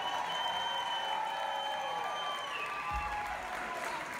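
Audience applauding and cheering at the end of a song. A high steady tone is held through the applause for about two and a half seconds, then slides down.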